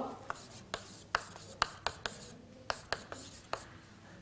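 Chalk writing on a chalkboard: about a dozen short, irregular taps and scratches as letters are written.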